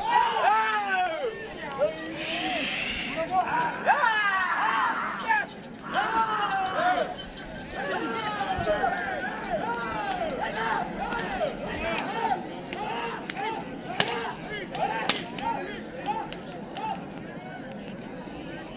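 Men shouting short, rising-and-falling calls over and over to urge on a pair of Ongole bulls dragging a stone block, over crowd voices. A few sharp cracks stand out in the last few seconds.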